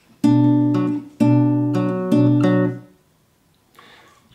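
Acoustic guitar fingerpicked on a B minor chord shape: the A and B strings plucked together, then a single string, with the pattern played three times. The notes ring out and fade away a little before the end.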